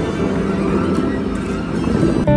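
Bellagio fountain water jets spraying, a steady rush of water with the show's music faint underneath.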